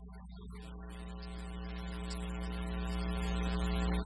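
Church organ holding a sustained chord that swells steadily louder and then cuts off sharply at the end, over a steady low hum.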